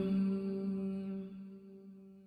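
Male voice chanting an Arabic dua, holding the last syllable of "ar-Raheem" on one steady pitch and letting it fade away over about two seconds.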